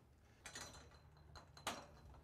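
Near silence, with a faint hiss and a single faint click near the end.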